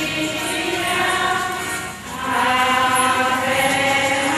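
A group of voices singing a religious hymn in a chant-like choir style, held notes swelling and easing, with a short dip between phrases about halfway through.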